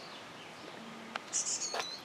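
Black-capped chickadee giving a quick run of three or four very high chirps about one and a half seconds in.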